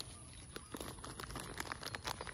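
Faint rustling and crackling of coconut palm fronds being handled and brushed, a quick run of small crackles from about a second in.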